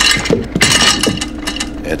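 A brief scuffle: clothes rustling and a quick run of clicks and knocks as one man grabs another and shoves him against a wall.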